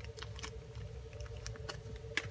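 Faint rustling and small irregular ticks of clear plastic parts bags being handled, over a faint steady hum.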